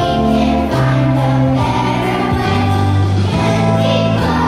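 Children's choir singing over instrumental accompaniment, the bass line moving to a new note every second or so.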